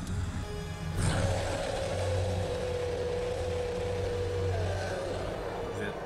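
Film soundtrack: dramatic score and sound design with a sudden swell about a second in, then one held high note that fades out, over a steady low rumbling drone.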